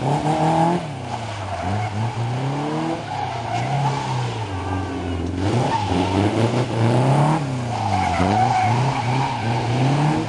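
Locost Seven-style kit car's engine revved hard and backed off again and again, its note climbing and dropping about once a second as it is thrown through tight autotest turns, with tyres squealing around the middle and near the end.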